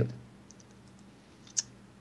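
A pause in a man's talk: after his last word trails off there are a few faint clicks, then one short, sharper click about a second and a half in.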